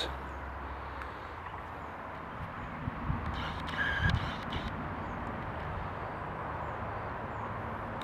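Steady faint outdoor background noise, with a few soft thumps about three to four seconds in and one short faint high tone.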